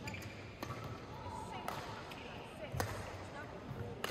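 Faint sounds of a badminton rally in a sports hall: several sharp racket strikes on the shuttlecock, about a second apart, with a brief squeak of court shoes on the floor.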